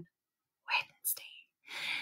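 A woman's soft, breathy whispered sounds in a pause between words: a brief silence, then a few short hissy breaths or whispered fragments, the last running into her next word.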